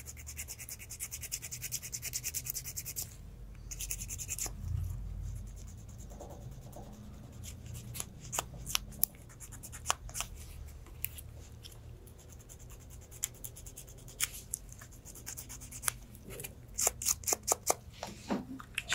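Fine side of a nail file rasping against the edge of a toenail, in quick continuous short strokes for the first few seconds, then in scattered single scratches, with a quick run of strokes near the end.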